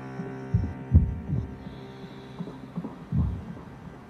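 A few low, dull thumps at uneven intervals over a faint steady hum.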